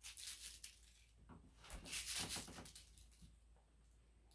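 Mylar crinkle ball toy crinkling as it is handled, in two rustling bursts about a second and a half apart, the second louder.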